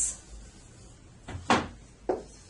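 A single sharp tap of a dry-erase marker against a whiteboard, about one and a half seconds in.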